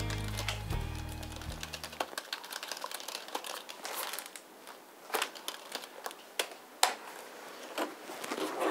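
Background music ends about two seconds in. After it come sheets of paper being handled and shuffled on a desk, with scattered sharp taps and clicks.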